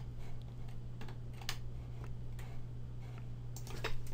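A few scattered clicks of a computer keyboard and mouse over a steady low hum.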